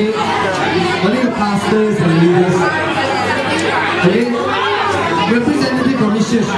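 Crowd chatter: many people talking at once in a large hall, a steady mix of overlapping voices with no single voice standing out.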